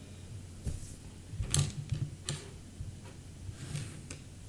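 A few short, faint rustles and taps close to the microphone, four in all, over a faint steady hum.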